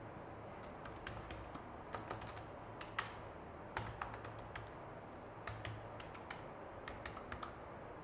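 Typing on a laptop keyboard: irregular key clicks in uneven runs, with a few sharper, louder taps among them.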